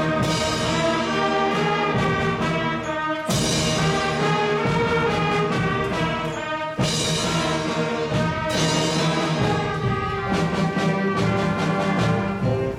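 Middle-school concert band of brass and woodwinds playing loudly in sustained chords, with fresh full-band entries about three and about seven seconds in.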